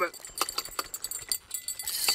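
Spinning reel being cranked to bring in a hooked fish: irregular clicking and rattling from the reel and rod.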